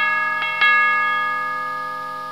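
Bell chimes struck three times within the first second, then ringing on and slowly dying away.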